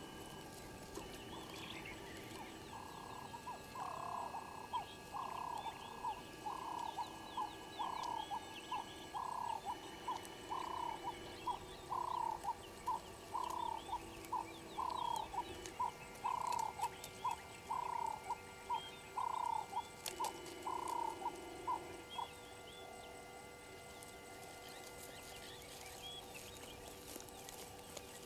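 An animal calling in a long, regular series of short notes, about one and a half a second, for nearly twenty seconds before stopping.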